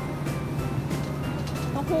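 Supermarket ambience: background music over a steady low hum, with a woman's voice starting right at the end.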